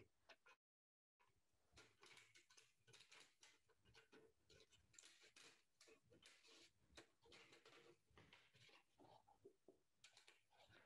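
Near silence, with faint irregular clicks and rustles of stiff plastic packaging pieces being handled and fitted together by hand. The sound drops out completely for about half a second near the start.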